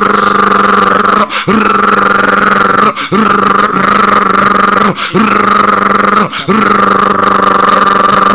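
A preacher's voice, loud through a hand-held microphone and PA, chanting in tongues in a rapid stream of syllables on one steady pitch. It comes in runs of about one and a half to two seconds, each broken by a quick breath.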